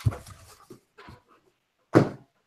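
Heavy, noisy breathing close to a microphone: a few short, sharp breaths, the loudest near the end.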